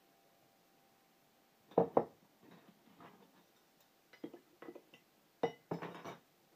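Glassware and metal utensils clinking and knocking against each other and the counter. After a quiet start there are two sharp knocks about two seconds in, then a few lighter taps, then another cluster of clinks near the end, some with a brief ring.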